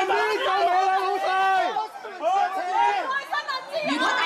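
Speech: several voices talking loudly over one another in a crowded hall, raised as in an argument.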